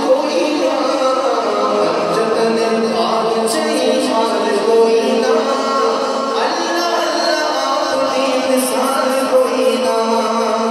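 A man singing a naat, Islamic devotional praise poetry, into a microphone with long held notes, the way a naat is usually sung, without instruments.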